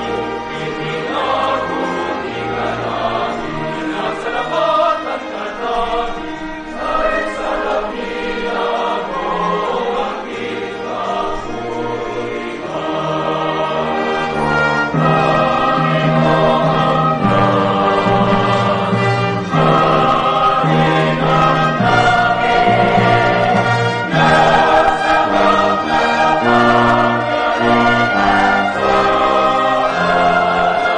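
A church choir singing with instrumental accompaniment in long, sustained notes, growing fuller and louder about halfway through.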